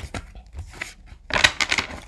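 A thick deck of cards being riffle-shuffled by hand on a table: scattered card clicks, then a fast run of flicking cards falling together about a second and a half in.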